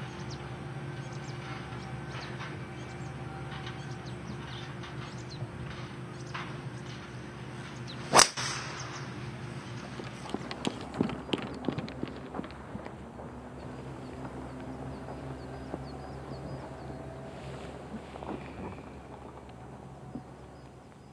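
Golf driver striking a ball off the tee: one sharp, loud crack about eight seconds in, with a short hissing tail as the ball leaves, over a steady low hum.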